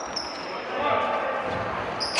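Basketball bouncing on a wooden gym floor during play, with players' voices echoing in the large hall.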